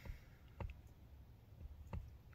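Quiet pause with three faint, short clicks, spaced about half a second and a second and a quarter apart.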